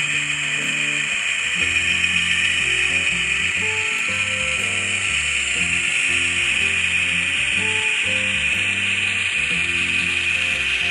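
Small electric motor and gearing of an N-scale model diesel locomotive whirring steadily as it runs along the track, under background music with a low, stepping bass line.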